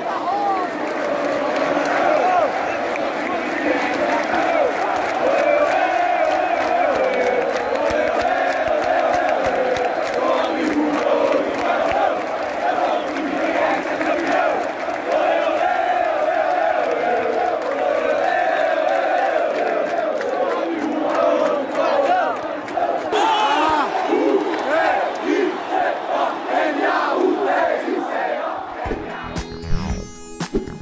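A large stand of Náutico football supporters singing a chant together, many voices in one steady, continuous mass. Near the end the crowd singing gives way to music.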